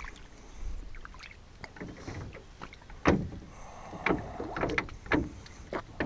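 A handful of irregular sharp knocks and thumps against a small boat, the loudest about three seconds in, as an arrowed carp is hauled aboard.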